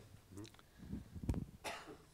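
A faint cough, with soft low thumps and a short click just before it, about a second and a half in.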